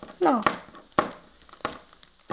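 A paper envelope and its packing tape crinkling and crackling under the fingers as the tightly taped package is worked open, with three sharp crackles about half a second apart.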